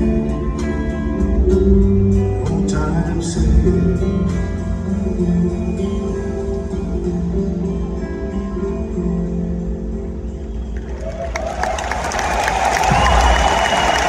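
Acoustic guitar with a live band playing the song's last soft bars. About eleven seconds in, the music gives way to a swell of crowd applause and cheering.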